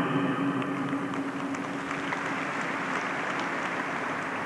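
Audience applause filling a large hall, a steady clatter of many hands that eases slightly near the end.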